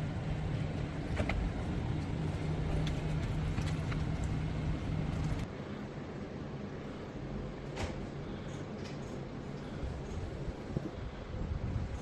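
A faint, steady low hum with a few light clicks scattered through it; the hum drops away about five seconds in and the sound turns quieter.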